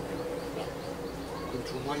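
A steady buzzing hum that holds one pitch, with a voice breaking into a laugh at the very end.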